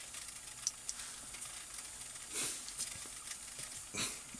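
Faint steady hiss of background recording noise in a pause between words, with a few tiny clicks and one soft rush of noise about two and a half seconds in.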